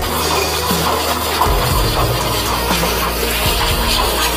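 High-pressure drain jetter running, water rushing from its hose inside a storm-drain manhole, a dense steady noise that starts suddenly. Background music plays along with it.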